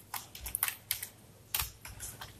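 Computer keyboard keys being pressed: a handful of irregularly spaced keystrokes while code is typed.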